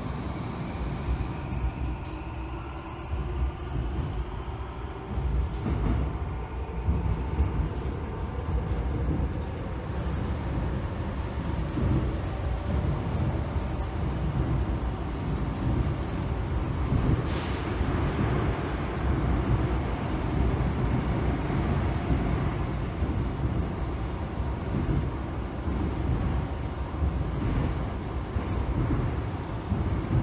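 Seoul Metro Line 3 subway train heard from inside the car, running along the track with a steady low rumble. A rising whine, typical of the traction motors as the train gathers speed, comes in the first few seconds, and there is a short hiss about halfway through.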